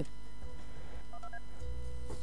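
Three short touch-tone telephone keypad beeps in quick succession about a second in, each pitched a little higher than the last, over a low steady hum.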